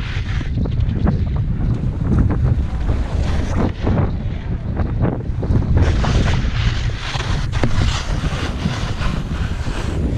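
Wind buffeting the microphone of a camera worn while skiing fast through moguls, with repeated bursts of skis scraping and skidding over the snow bumps, thickest in the second half.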